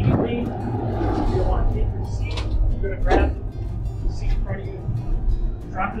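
A man's voice giving short instructions, over background music.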